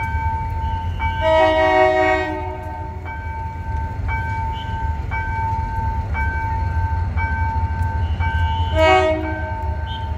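Level-crossing alarm beeping about once a second while an approaching MTF3300 diesel locomotive sounds its multi-tone horn: one blast of about a second a little over a second in, and a short blast near the end. A steady low rumble runs underneath.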